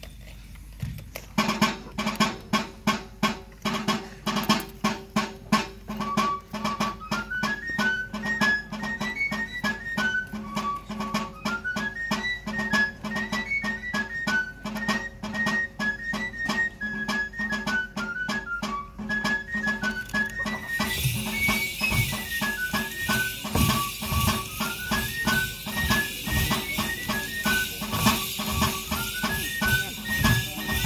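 A Basque xirula (three-hole pipe) and a drum played together by one musician as a dance tune. The drum beats a steady rhythm alone at first, and the pipe's high, skipping melody joins about six seconds in.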